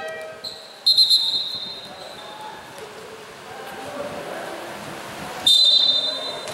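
Two short, loud, shrill blasts of a referee's whistle, the first about a second in and the second near the end, over the low background noise of a basketball game in a gym.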